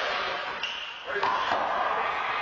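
A small rubber handball striking the wall and floor of an indoor handball court: a few sharp smacks in quick succession during the serve and return.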